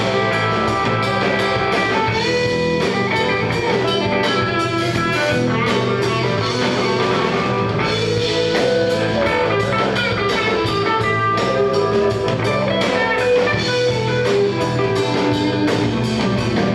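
Live blues-rock band playing: electric guitars, bass guitar and drum kit at a steady beat.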